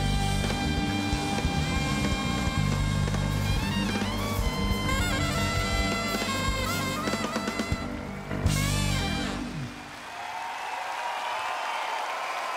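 Live jazz-funk band with saxophone, trumpet, electric bass and drum kit playing the close of a tune, the horns holding and bending long notes, ending on a final hit about eight and a half seconds in. The crowd then applauds and cheers.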